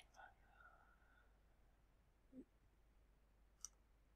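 Near silence: room tone with two faint computer mouse clicks, one right at the start and one about three and a half seconds in.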